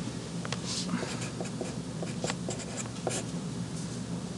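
Dry-erase marker writing on a whiteboard: a string of short squeaky strokes and light taps, unevenly spaced, over a faint low hum.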